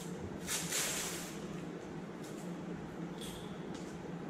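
Masking tape pulled off its roll with a short rasping rip about half a second in, followed by a few faint clicks and crinkles as the strip is handled, over a steady low hum.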